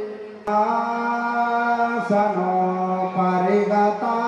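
A man chanting a Sanskrit mantra into a microphone in long, level held notes. He takes a brief breath about half a second in, and there are short breaks between phrases later on.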